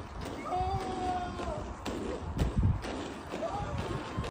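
A person's voice letting out a long, drawn-out cry of about a second, then a shorter rising cry near the end, over a low rumble that swells briefly midway.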